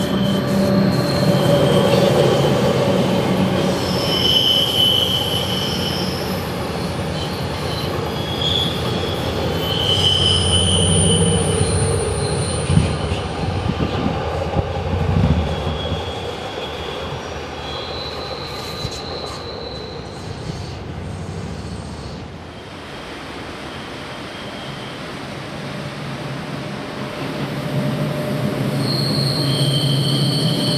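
Metre-gauge Rhaetian Railway train running past on a curve, its wheels squealing in several high, shifting tones over the rumble of the coaches. The sound drops away about two-thirds through, and the squeal and rumble come back near the end as another train approaches.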